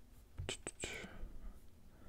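Faint breath and mouth clicks from a man pausing mid-sentence, about half a second to a second in.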